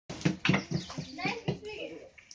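Hands slapping and patting puran poli dough: a quick run of dull thumps, about four in a second, with voices talking over them.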